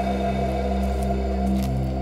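Background music: a low, sustained drone of held tones with no beat.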